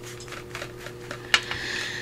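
Quiet handling of card and paper on a tabletop: a few light clicks and soft rustles as a kraft envelope is moved, over a faint steady hum.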